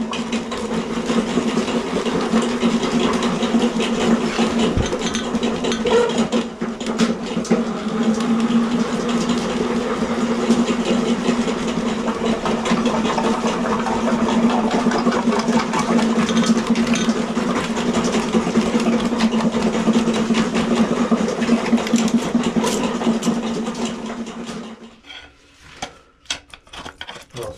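Electric drain-cleaning machine running with its cable spinning inside the sewer line: a steady motor hum over rough, rattling noise, which shuts off near the end.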